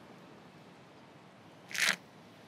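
A short slurp of thick shake sucked up through a drinking straw, near the end, over a faint steady background hiss.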